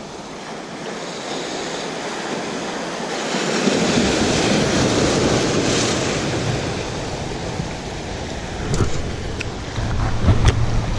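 Surf washing in over jetty rocks: a wave breaks and the whitewater swells loudest about four to six seconds in, then ebbs away. A few light clicks near the end.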